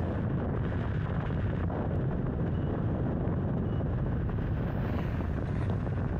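Steady wind rush on the microphone with road noise, from moving at about 55 km/h.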